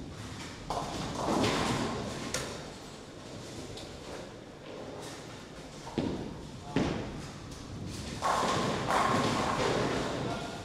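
Ten-pin bowling alley sounds: thuds of bowling balls landing on the lanes and pins being knocked down, about one second in, around six and seven seconds, and in a longer clatter near the end, with voices in the big hall.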